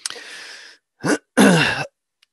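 A man clearing his throat: a breathy rush of air, then a short rasp about a second in and a louder, longer one just after.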